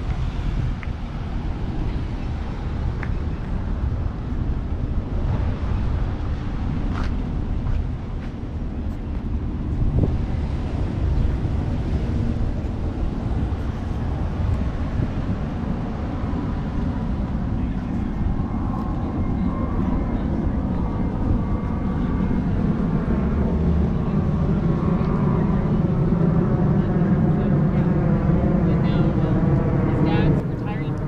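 Street traffic: a steady low rumble of cars driving and idling, growing a little louder in the second half, with voices of people nearby.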